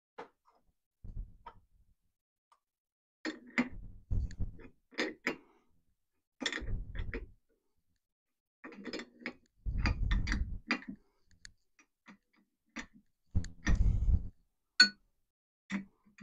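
Irregular clicks, taps and dull knocks of metal parts being handled as an aluminium sleeve is glued and pushed into a pulley bush, coming in several short bursts.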